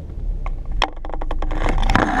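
A loose GoPro camera shifting and knocking on a car dashboard: a rapid string of clicks and scrapes starting a little under a second in, over the low rumble of the car.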